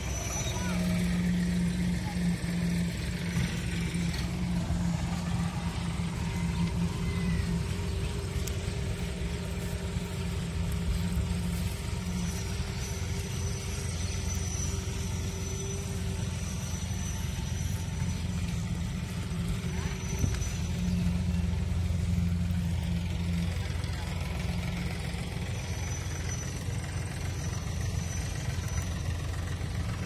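An engine running steadily: a low, continuous hum.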